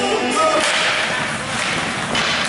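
Ice hockey faceoff and the scramble after it: sticks slapping and clacking on the ice and puck, and skates scraping the ice, with music in the background.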